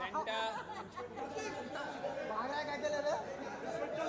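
Chatter of several voices talking over one another at once, none standing out clearly.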